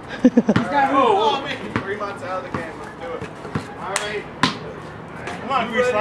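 Basketball bouncing on a concrete driveway, a string of sharp, unevenly spaced bounces as it is dribbled and played, with men's voices calling out over it.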